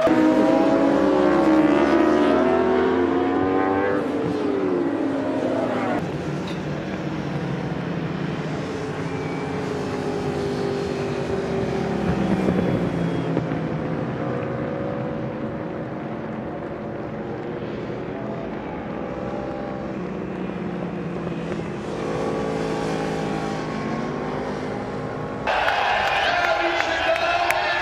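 Endurance-racing superbike engines at high revs, several overlapping, their pitch climbing and dropping through gear changes for the first few seconds, then a steadier blend of engine sound for the rest.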